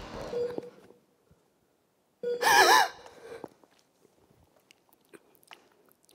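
A woman's loud, high-pitched vocal cry, about two seconds in, lasting under a second with its pitch wavering up and down. Faint rustles and light taps follow.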